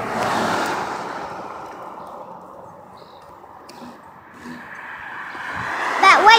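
Road traffic noise: a vehicle passes close by, swelling in the first second and fading over the next couple of seconds, and another builds toward the end.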